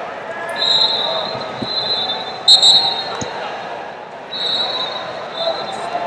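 Referees' whistles blowing on and off across a large hall, sharpest about two and a half seconds in, over the general chatter of a crowd. Two dull thumps, about a second and a half apart, come in between.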